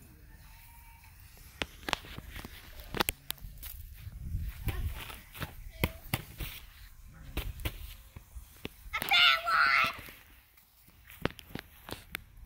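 A child's high-pitched voice calls out loudly about nine seconds in, held for about a second. Before it come scattered light clicks and knocks and a brief low rumble.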